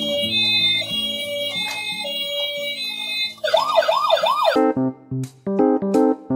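Background music, then a little past halfway a toy ambulance's electronic siren wails up and down about three times in quick succession and cuts off. Short keyboard notes follow.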